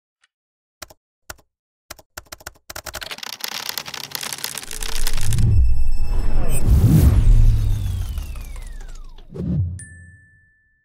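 Sound-designed intro jingle: a few keyboard-typing clicks, then a rising swell into heavy low booms with a long falling whistle-like tone. It ends on a low hit and a high, held ding.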